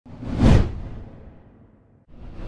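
A cinematic whoosh sound effect with a deep low boom underneath. It swells to a peak about half a second in, then fades away over the next second.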